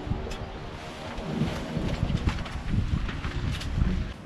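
Wind buffeting the microphone: an uneven low rumble with a hiss over it.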